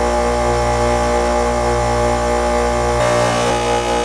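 Harbor Freight bench grinder running freely with no work against the wheel: a steady motor hum and whine.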